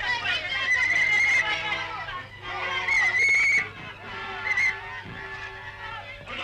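A woman's high-pitched wailing cries during a scuffle, long drawn-out shrieks in the first second and a half and again about three seconds in, with other voices under them.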